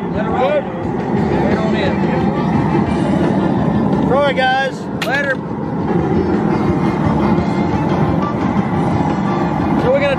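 Steady roar of the propane burner firing under the crawfish boil pot. A few short, high calls come through about four seconds in.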